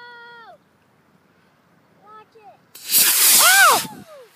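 Solid-fuel model rocket motor firing on lift-off, almost three seconds in: a loud whoosh lasting about a second, with children's voices rising over it.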